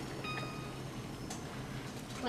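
Steady low hiss and hum from a saucepan of just-heated water on the stovetop as it is lifted off the burner, with a faint clink a little after a second in.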